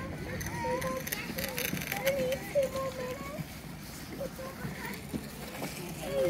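Voices of people and children in the distance, short calls and snatches of chatter with no clear words.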